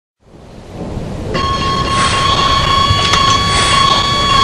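Intro sound effect: a low rumble fades in, and about a second in a steady high-pitched whine joins it and holds.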